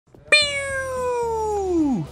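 A man's voice making a wordless mock intro sound: one long, high tone that starts abruptly and slides steadily down in pitch until it drops away.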